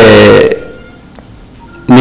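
A man preaching in Arabic: the end of a held word in the first half second, a pause of about a second and a half with only faint room tone, then his speech starting again near the end.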